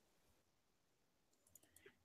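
Near silence, with a few very faint clicks near the end.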